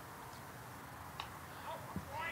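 Quiet ballpark ambience with one faint, sharp knock about a second in as the pitched baseball arrives at home plate.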